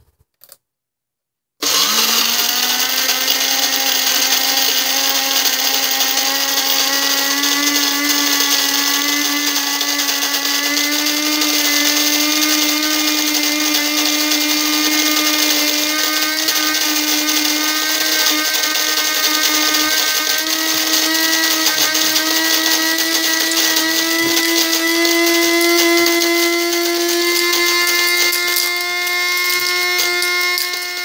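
Cuisinart electric burr coffee grinder grinding coffee beans at a drip-grind setting: a steady motor whine that starts about two seconds in and creeps slowly up in pitch.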